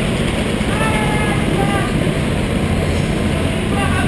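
Indoor rental kart engines running steadily in the pit lane, a low drone, with a voice calling out briefly about a second in.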